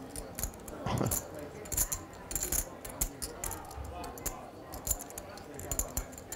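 Poker chips clicking together as a player handles and riffles them at the table, in quick, irregular bright clicks.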